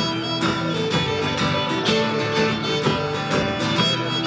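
Folk-style music with fiddle and acoustic guitar playing an upbeat tune.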